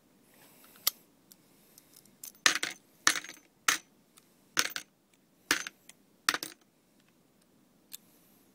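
Brass revolver cartridge cases clinking: a sharp click about a second in, then six metallic clinks about two-thirds of a second to a second apart, each with a quick rattle of bounces.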